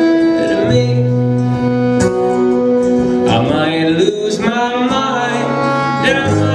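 Live Americana folk band playing a love song: fiddle, acoustic guitar and upright bass, with the bass holding long low notes under the melody.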